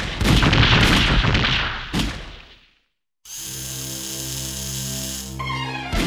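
Loud cartoon sound effects: noisy crashing with sharp bangs that dies away about two and a half seconds in. After a brief silence, music of held chords begins, with a rising run near the end.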